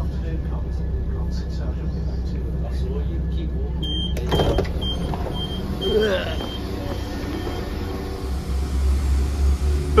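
Train passenger door opening after its button is pressed: a clunk about four seconds in, a short slide, then a string of short high door-warning beeps for about three seconds, over the low hum of the stationary diesel train. Near the end a deeper diesel engine rumble builds as a train pulls away.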